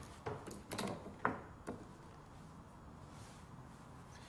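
A few short knocks and rubbing sounds in the first two seconds as a beef fore rib joint is handled and set down on a plastic cutting board, then only faint room tone.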